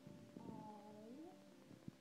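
A young girl's faint, wordless, cat-like vocalizing: drawn-out sounds that slide down and then up in pitch. There is a light tap near the end.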